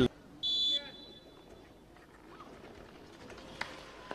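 A referee's whistle blows once, short and shrill, about half a second in, over faint open-air rink ambience. A single sharp knock follows near the end.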